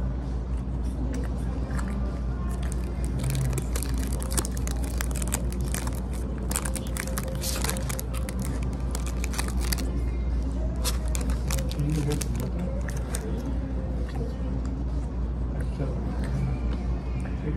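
Someone eating a chocolate-coated Twix ice cream bar: biting and chewing, with a dense run of crisp crunches and crackles in the middle stretch, over a steady low hum.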